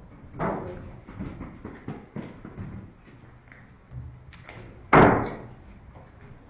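A series of knocks and thuds echoing inside a hollow enclosed structure, with one much louder thump about five seconds in that rings on briefly.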